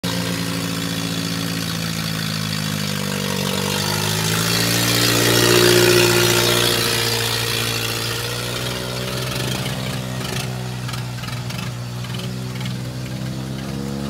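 Mahindra 575 tractor diesel engines running hard under load, the pitch rising and falling a few seconds in, with a rapid clatter toward the end.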